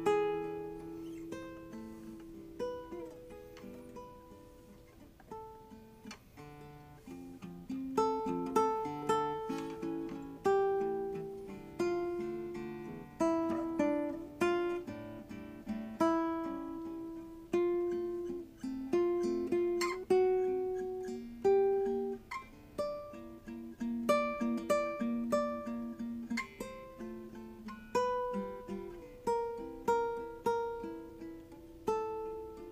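Lorenzo Lippi classical guitar, with a spruce top and maple back and sides, played solo fingerstyle: a piece of plucked single notes and chords that ring and fade. It is soft for the first several seconds, then louder and busier from about eight seconds in.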